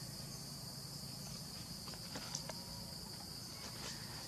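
Steady high-pitched insect drone, cicadas or crickets, in forest, with a few faint clicks about halfway through and near the end.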